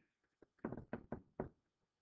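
A quick run of about six faint, light taps within under a second, from a pen stylus knocking on the writing surface of a tablet or interactive board.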